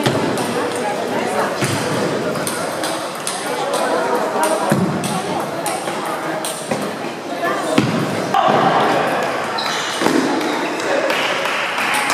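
Table tennis balls clicking off bats and tables in quick, irregular taps, from several tables in play at once. Under them runs a steady chatter of voices in a large hall.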